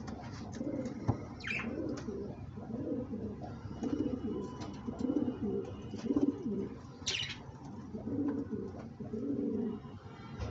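Domestic pigeons cooing repeatedly, low coos following one another every second or so. Two brief higher sounds cut in, one about a second and a half in and one about seven seconds in.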